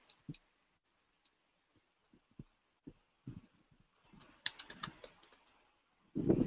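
Faint computer keyboard typing: a few scattered key taps, then a quick run of about a dozen keystrokes near the end.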